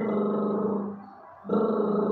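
A woman imitating snoring with two long voiced snores at a steady low pitch, the second starting about a second and a half in.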